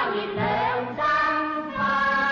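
A 1960s Cantonese film song played from a vinyl record: singing that holds and glides between notes over instrumental accompaniment.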